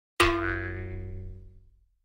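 A single ringing sound-effect hit that starts suddenly and fades out over about a second and a half.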